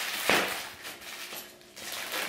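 Plastic wrapping on a rolled, compressed memory-foam mattress rustling and crinkling as it is handled and cut open, with one sharp crackle about a quarter of a second in.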